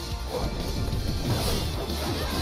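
Dramatic trailer music with animated fight sound effects over it: a run of sword strikes and crashing impacts.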